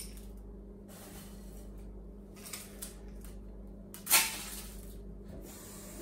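Crushed ice being heaped onto a mojito in a tall glass: faint scraping and crunching, with one sharp knock about four seconds in, over a low steady hum.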